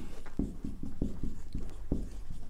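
Marker pen writing on a whiteboard: a run of short, irregular strokes and taps as letters are drawn.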